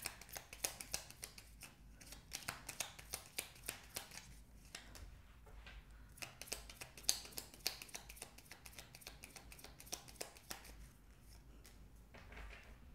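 Tarot deck being shuffled by hand: a faint, rapid run of light clicks and flicks as the cards slide and tap against each other, thinning out near the end.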